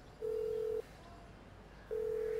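Telephone ringing tone heard by the caller (ringback) while a call connects: a steady, low, single-pitched beep in double rings. One beep of about half a second is followed by a pause of about a second, and the next beep starts near the end.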